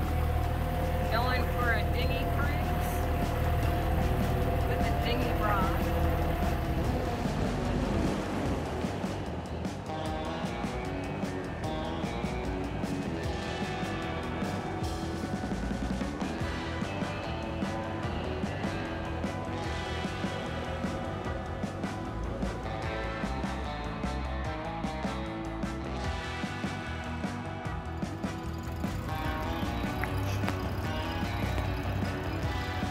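New Mercury 15 hp four-stroke dinghy outboard running steadily for the first several seconds. Background music then takes over for the rest.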